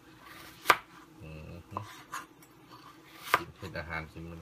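A large kitchen knife chopping green vegetable stems on a plastic cutting board. There are two sharp chops, one just under a second in and one past three seconds, with a few lighter knife taps between them.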